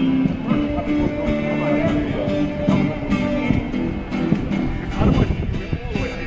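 Street musicians playing a song live on guitars, the music steady throughout.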